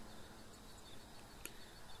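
Quiet outdoor night background: a faint steady hiss, with a single brief click about one and a half seconds in.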